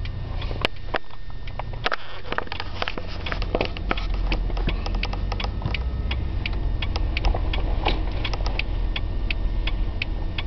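Car cabin noise while driving: a steady low road-and-engine rumble that grows a little louder about three seconds in, with many small irregular clicks and taps scattered through it.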